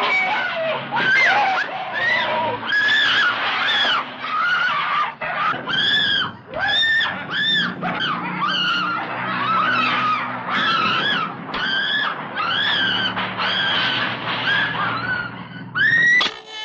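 Frantic, repeated high-pitched screaming in a horror-film scene: short shrieks, about two a second, each rising and falling in pitch, over a faint low hum.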